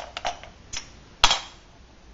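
Small metal cans being handled and set down on a workbench: a few light clicks, then one sharp metallic clank with a brief ring about a second in.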